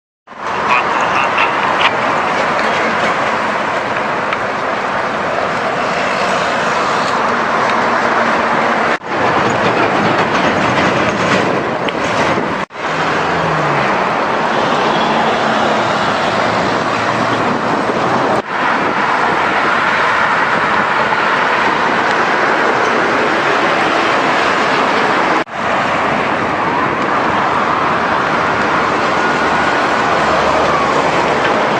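Loud, steady roadside noise of highway traffic passing and a container truck burning, broken by four brief dropouts where the footage is cut.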